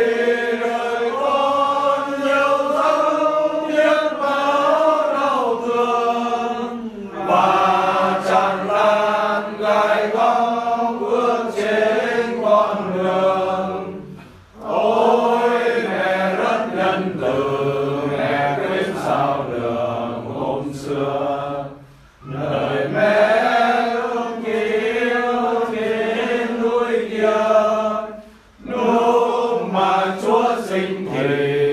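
Slow sung Vietnamese Catholic prayer chant, voices holding long phrases of about seven seconds each, with brief pauses for breath between them.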